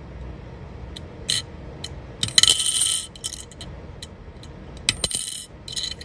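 Steel tweezers tapping and prying at a small metal coin on a glazed ceramic surface, flipping it over. A few sharp clicks come first, then a longer clattering scrape of coin on ceramic about two seconds in, and another just before the end.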